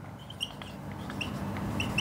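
Whiteboard marker squeaking against the board as a word is written: a handful of short, high squeaks.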